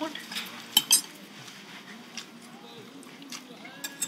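Cutlery and crockery clinking at a meal table, with two sharp clinks close together about a second in and another near the end, over quieter clatter.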